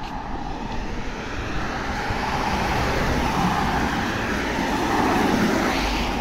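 Road traffic on a wet street: a steady rush of tyre and engine noise from passing cars, swelling around the middle and again near the end.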